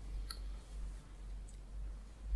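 Low room hum with one light click about a third of a second in and a fainter tick around a second and a half.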